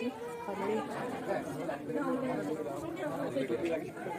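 Indistinct background chatter: several people's voices talking over one another, with no clear words.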